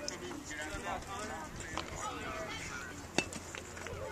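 Background voices of people talking and calling out around a ball field, with one sharp click a little after three seconds in.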